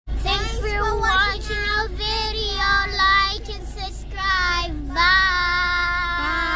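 Children singing loudly together, ending on a long held note, over the steady low hum of a car cabin.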